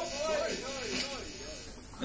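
A person speaking into a live room, heard on a portable cassette recording of the show, over a steady background noise floor.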